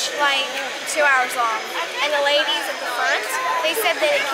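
A girl talking in a high child's voice, with crowd chatter and steady background noise behind.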